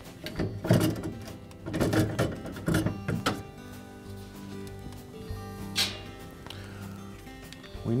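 Wire freezer baskets knocking and clattering as they are set down, several knocks in the first three seconds and one more about six seconds in, over soft background music with held tones.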